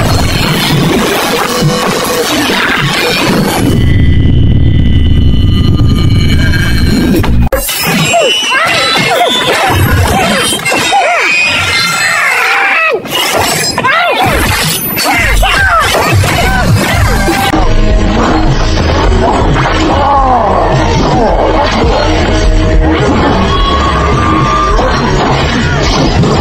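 Action-film fight soundtrack: loud music overlaid with smashing, shattering and hitting sound effects, with several sharp crashes spread through.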